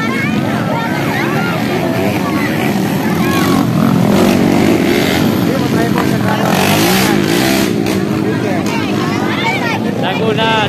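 Motorcycle engines running, their pitch rising and falling, with crowd voices over them.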